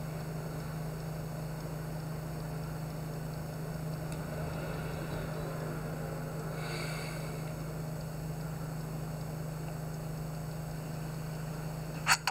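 Steady low hum with a hiss beneath it, unchanging in level, with a faint brief higher sound about seven seconds in.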